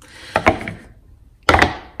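Resin-and-glass mosaic coasters set down on a paper-covered table: a couple of short, dull knocks, the loudest about one and a half seconds in.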